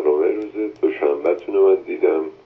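Speech only: a caller's recorded telephone message played back, the voice narrow and phone-like.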